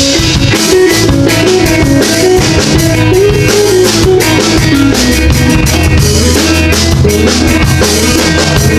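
Live band playing loudly: electric guitars over a drum kit keeping a steady beat.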